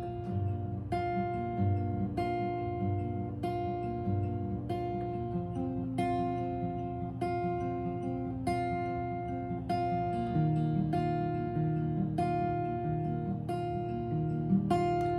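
Acoustic guitar with a capo on the third fret, fingerpicked softly: single plucked notes at an even pace of a little under two a second, ringing over one another, with the chord changing twice.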